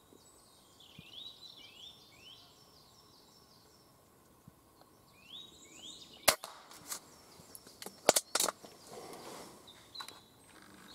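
Silenced air rifle firing at a grey squirrel: a few sharp cracks and clicks in the second half, the loudest about six seconds in and about eight seconds in. Before them, a bird repeats short rising chirps.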